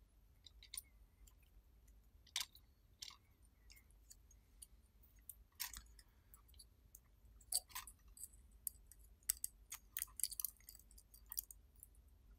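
Faint, irregular small clicks and crackles of fingers handling thin copper transformer wire and the plastic transformer against a small circuit board, coming more often near the end.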